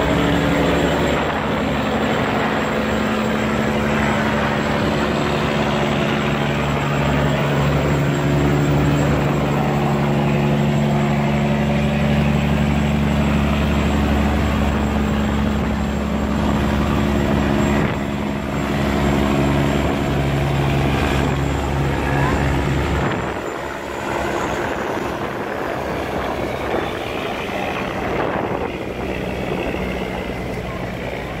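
A river cargo boat's engine running steadily as the boat passes close through the sluice, over churning, rushing water. The engine drops away about 23 seconds in, leaving the rush of water.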